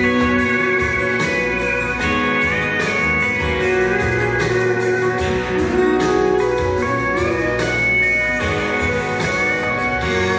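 Instrumental break of a country ballad backing track: a guitar lead with sliding notes over a steady accompaniment.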